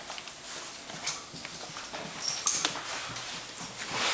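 A bed bug detection dog searching a room, with short sniffing and movement sounds, including a few brief sharp bursts about a second in and again around two and a half seconds in.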